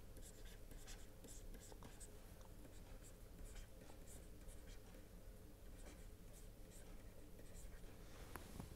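Faint taps and scratches of a stylus writing on a pen tablet: many short, quick strokes over a low steady hum.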